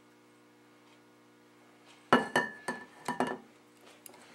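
A metal tablespoon clinking and scraping against a stainless steel mixing bowl while cheesecake batter is scooped out. After about two seconds of faint room hum come about five sharp, ringing clinks in quick succession.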